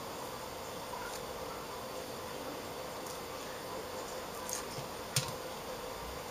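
Steady hum of room tone, with a few light clicks near the end as hands handle tape on the panel's metal back cover.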